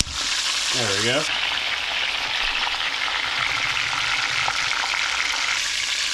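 Whole masala-marinated fish shallow-frying in hot oil in a stainless steel pan: a steady, loud sizzle with scattered small crackles.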